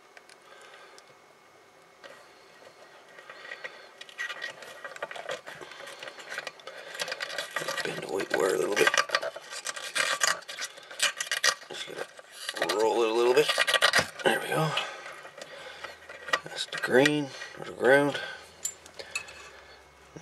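Soldering iron tip and a small hand tool scraping and clicking against a solder lug on the metal power-supply chassis as the AC cord's ground wire is desoldered and worked loose. The scratchy clicking starts about two seconds in and is busiest in the middle.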